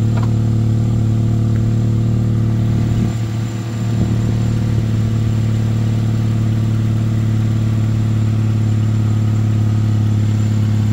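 Chevrolet Malibu engine idling steadily on a test run after a starter replacement, with a brief dip in level about three seconds in.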